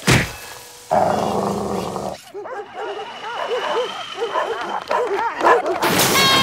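Cartoon dog barking and yapping in a rapid string of short yips for the second half, after a thud at the start and a brief rushing noise.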